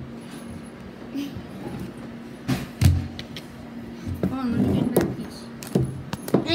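Handling noises at a table: a metal fork clinking and a few sharp knocks, two close together mid-way and one near the end. A brief faint voice comes in about four seconds in.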